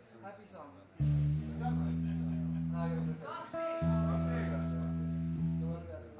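Electric guitar through an amplifier: a low string plucked and left to ring for about two seconds, then plucked again after a short gap and left to ring for about two seconds more before being cut off.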